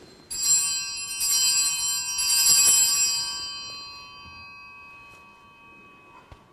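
Altar bells rung three times at the elevation of the chalice after the consecration, a bright ringing chime that dies away over a few seconds.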